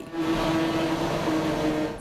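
Electric train running by: a steady rushing rolling noise with a held, even-pitched motor hum under it.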